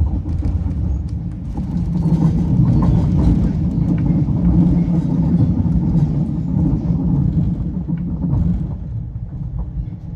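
Running noise inside a Copenhagen S-tog electric commuter train on the move: a steady low rumble of wheels on rails. It grows louder after the first second or so and eases off near the end, with scattered light clicks.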